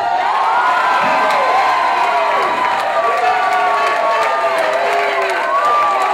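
Club audience cheering, whooping and shouting, with some clapping, many voices overlapping.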